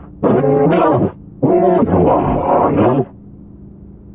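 Vocal calls of an alien creature: two drawn-out calls with wavering pitch, the second about twice as long as the first, over a steady low hum.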